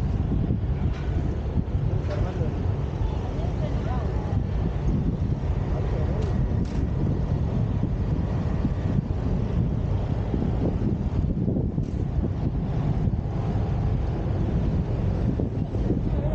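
Wind buffeting the camera's microphone: a steady low rumble with no breaks.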